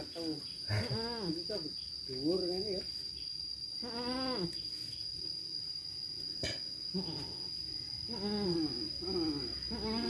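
Goats bleating: a string of short wavering bleats, with a pause in the middle of the run.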